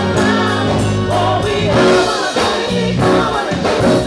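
Gospel choir singing with a live band: electric bass, drum kit keeping a steady beat, and sustained low bass notes under the voices.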